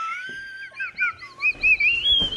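A high whistling tone that glides slowly upward, then breaks into a run of about six quick rising-and-falling chirps.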